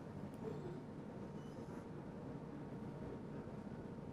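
Faint steady room noise, a low hiss with a light hum, and a couple of tiny clicks near the start.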